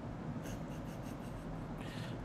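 A few faint computer keyboard and mouse clicks over a steady low room hum.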